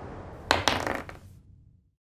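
A die thrown onto a table: a sharp knock followed by a few quick clattering clicks that die away within about a second.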